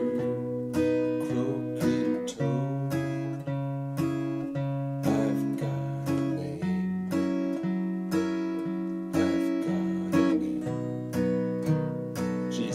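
Acoustic guitar with a capo at the fourth fret played in a boom-chick strum: a single bass note, then a light brush on the treble strings, in a steady even rhythm. It moves through the verse chord changes C, G, A minor, D7 and G7.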